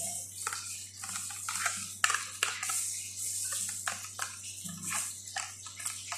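A spoon scraping and tapping thick yogurt out of a plastic cup into a bowl, making irregular clicks and scrapes.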